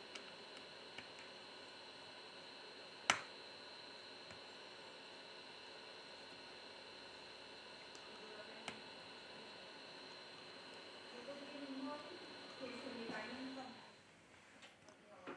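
Faint handling of small phone parts being fitted by hand: a sharp click about three seconds in and a smaller one past eight seconds, over a steady faint high-pitched whine.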